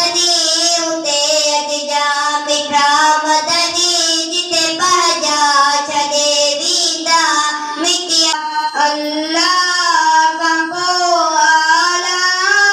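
A boy singing a naat, a devotional poem in praise of the Prophet, into a handheld microphone. A single unaccompanied voice sings long held, wavering notes in phrases with short breaths between them.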